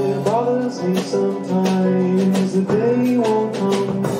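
Live song: an acoustic guitar strummed in a steady rhythm, with a voice singing long notes that slide in pitch and carry no clear words.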